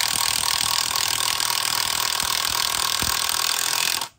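Boshun 21 V cordless brushless impact wrench, fitted with a hex bit adapter, hammering steadily as it drives a 10 cm wood screw into a log. It cuts off abruptly at the end, as the screw seats.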